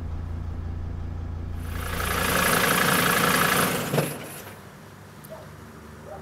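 Low, steady hum of an ambulance engine idling, heard from inside the cab. About two seconds in, a loud hiss swells up for about two seconds and ends in a sharp click, leaving a quieter hum.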